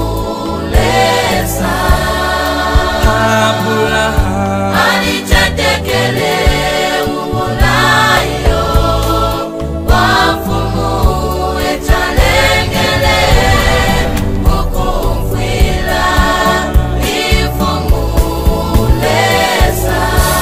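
Gospel song: a choir singing long held notes in harmony over a band with a steady beat.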